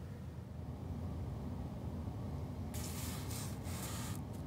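Handling noise from a phone being moved and repositioned: a low rumble, then about a second and a half of scraping rubs against the microphone near the end.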